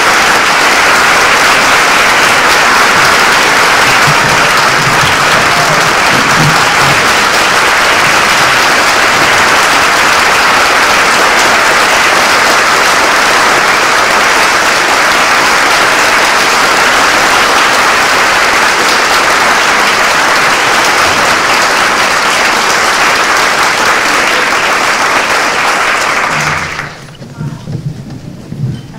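A large audience applauding, loud and unbroken, dying away about a second before the end.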